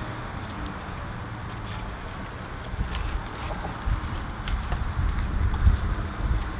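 Steady outdoor background noise, with low rumbling thumps that grow stronger in the second half.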